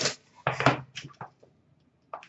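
Cardboard trading-card hobby boxes being handled: a few light knocks and scrapes in the first second and a half as the boxes are lifted and set down.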